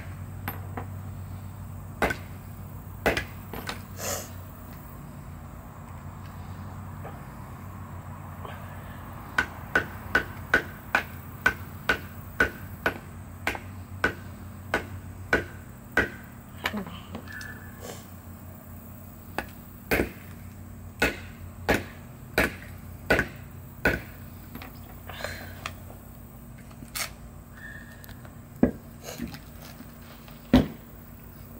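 Hammer striking the handle of a screwdriver set into a coconut's eye, driving it through the shell. Sharp knocks come a few at first, then a steady run of about two blows a second for several seconds, then scattered blows.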